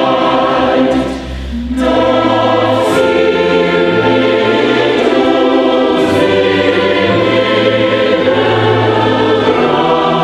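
Mixed SATB choir singing sustained chords with orchestral accompaniment, including violins and low held notes beneath. A short break between phrases comes about a second in, then the choir and orchestra carry on.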